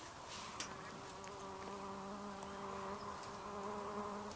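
A flying insect buzzing close to the microphone, a steady low hum that starts about a second in.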